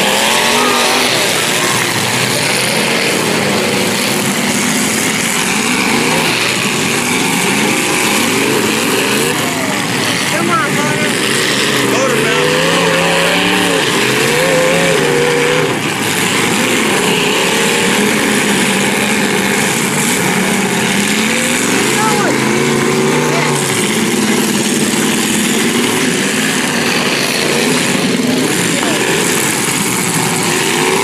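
Engines of several demolition-derby cars running and revving at once, their pitch rising and falling throughout.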